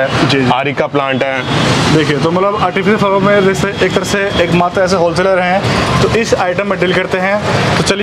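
People talking, with the steady low hum of road traffic behind them.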